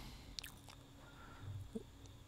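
Very quiet pause with faint room tone, one soft click about half a second in and a faint low thump about a second and a half in.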